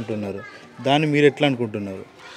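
Speech only: a man talking into the interview microphone, with a short pause about half a second in before he speaks again.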